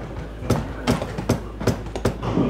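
Hammer striking the toe of a ballet pointe shoe, pounding it into shape: four sharp, even blows, about two and a half a second.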